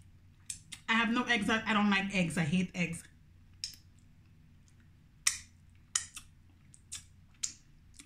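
A woman speaks for about two seconds, then a series of short sharp clicks and taps follows as she picks through the seafood with her fingers in a large glass bowl.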